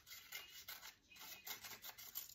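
Scissors cutting a thin strip of paper: several faint, short snips and rustles in quick succession.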